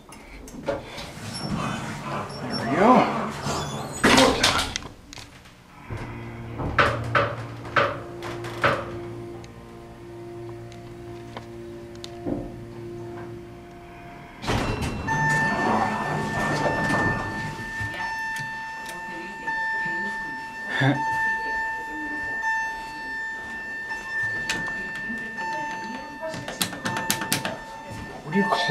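Elevator sounds: clunks and knocks from the door being pushed back. A steady low hum follows as the elevator runs. Then, about halfway, a steady high electronic buzzer tone starts suddenly and keeps sounding, heard as really annoying.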